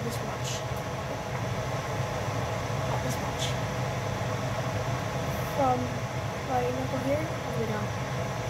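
Pot of rotini at a rolling boil, foam on its surface, over a steady low hum. Faint voices in the background give a few rising and falling tones in the second half.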